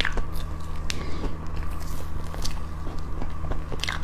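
Close-miked chewing of soft cream cake, with wet mouth and lip clicks scattered through, over a steady low hum.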